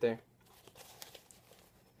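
Faint rustling of a Cordura nylon pouch being turned over in the hands, with a few soft ticks of fabric and strap handling.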